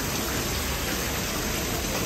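Steady rain falling on the ground and nearby surfaces, an even hiss.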